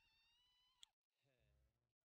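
Near silence, with only a very faint, high-pitched voice-like sound in the first second and fainter murmuring after it.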